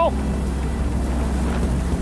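Engine and wind noise of a moving open-top convertible, heard from inside the car: a steady low rumble with a rushing haze over it.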